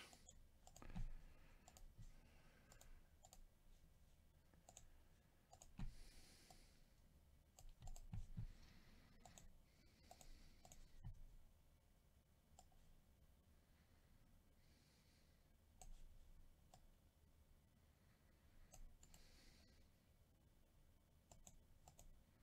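Near silence broken by faint, scattered clicks of a computer mouse and keyboard, with a few soft short rustles or breaths between them.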